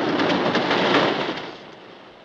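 Roller coaster cars running on their track close by: a loud rumbling clatter that swells and then fades away after about a second and a half.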